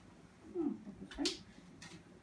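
A woman's soft 'hmm' sounds, with a couple of quick wiping strokes of an eraser on a whiteboard, about a second in and near the end.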